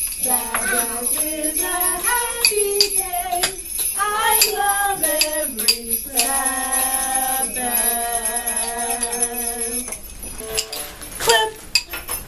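A simple children's song sung along with jingle bells shaken steadily throughout, with a few sharp clicks and taps mixed in; the singing holds two long notes about halfway through.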